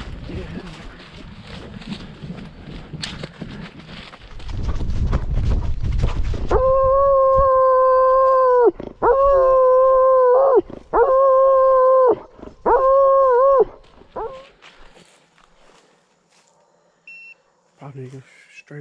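Blood-trailing hound baying close to the microphone: four long, steady howls of a second or two each, then a short one, the bay a tracking dog gives when it has a wounded deer stopped. Before the baying, brush rustling and wind on the microphone.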